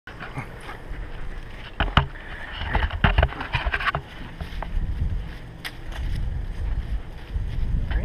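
Rumbling, rubbing handling noise from a GoPro strapped to a German Shepherd as the dog moves, with a few sharp knocks, the loudest about two and three seconds in.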